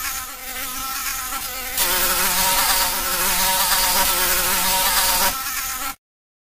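A fly buzzing in flight: a wavering hum with many overtones that grows louder about two seconds in, eases back near the end and then cuts off abruptly.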